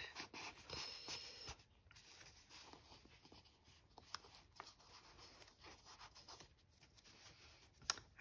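Faint rustling and scraping of paper and card, with a few light ticks, as a large paper tag is slid down into an envelope pocket of a handmade journal. It is a little louder in the first second or two.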